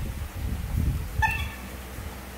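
A young pet macaque gives one short, high squeak about a second in, while the monkeys eat mango, with low irregular thumps in the first half.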